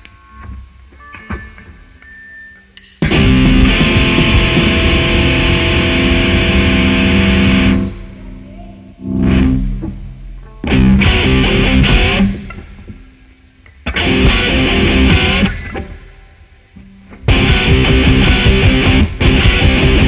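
Live noise-rock playing on distorted electric guitar through effects pedals, with drums. A few faint plucked notes open it, then the band comes in loud about three seconds in, cuts off and restarts in several blasts of one to five seconds, and plays on without a break from about seventeen seconds.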